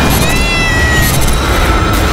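A cat meowing once, a single drawn-out call starting just after the start and lasting under a second, over a steady low rumble.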